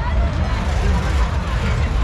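Funfair din: a loud, steady low rumble with voices over it.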